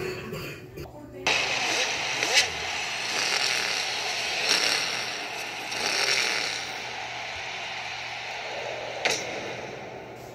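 Animated race-scene soundtrack heard through a TV speaker: a loud, steady roar of crowd and race noise starts suddenly about a second in, with a couple of sharp clicks.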